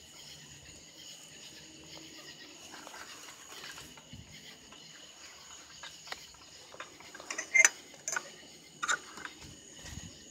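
Crickets chirring steadily at night, with a handful of short, sharp clicks or knocks close by about seven to nine seconds in, the loudest of them at around seven and a half seconds.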